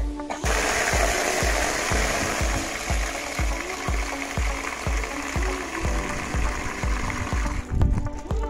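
Water from a hose gushing steadily into a black plastic tub as it is filled. The flow starts about half a second in and stops just before the end, over background music with a steady beat.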